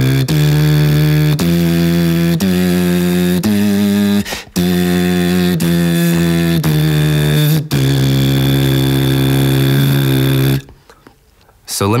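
A beatboxer's lip oscillation: a clean buzzing of the lips with a sung note over it. It steps up a scale one note at a time, breaks briefly, then steps back down to a long held low note. It stops about ten and a half seconds in.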